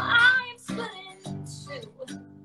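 A woman singing live with acoustic guitar: a sung note loudest at the start, then guitar strums under softer singing.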